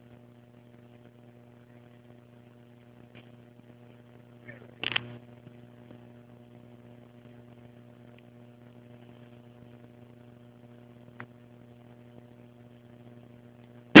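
A steady low hum with evenly spaced overtones, fairly quiet, broken by one short sharp sound about five seconds in and a faint click near eleven seconds.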